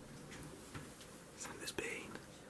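Faint whispering, with short breathy hushes in the second second.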